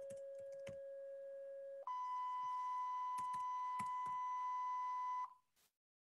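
A digital sine-wave oscillator tone at 550 Hz jumps to 1000 Hz a little under two seconds in, as the Faust code is edited and recompiles live. Keyboard clicks sound over it. The tone cuts off about five seconds in.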